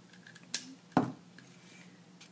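Two sharp metallic clicks about half a second apart, the second a little louder: jewelry wire and hand tools being handled on the work surface.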